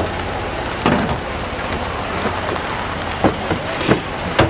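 Steady outdoor street noise, a rushing hiss and low rumble, with a few short knocks: one at the start, one about a second in, and two in the last second.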